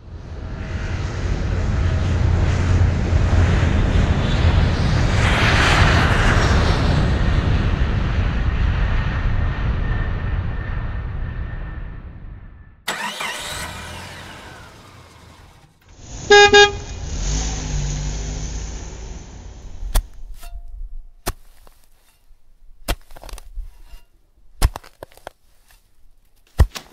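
A string of sound effects. An airplane flies past, swelling to a peak about six seconds in and fading out by about twelve seconds, and then a vehicle whooshes by. A horn honks once, briefly, about sixteen seconds in, followed by an engine running. In the last few seconds come a series of sharp separate knocks, like a pickaxe striking rock.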